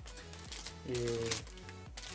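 Plastic bags around a model kit's sprues crinkling and rustling as they are handled and shifted in the box, in short scattered crackles.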